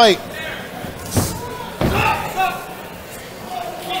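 Two heavy thuds in a boxing ring, about two-thirds of a second apart, as the fighters exchange blows.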